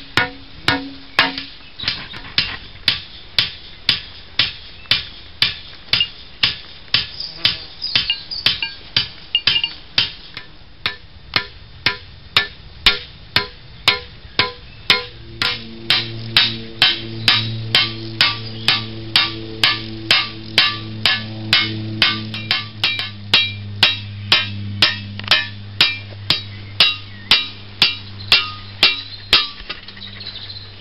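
Hand-peening a scythe blade: a hammer strikes the blade's edge on a small peening anvil in a steady rhythm of about two sharp metallic blows a second, drawing out and thinning the cutting edge. From about halfway through, a steady low droning tone sounds under the blows.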